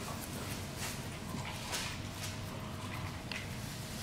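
Small fly-tying scissors snipping through a spun antelope- and deer-hair fly body as it is trimmed to shape: several short, crisp cuts about a second apart over a steady background hiss.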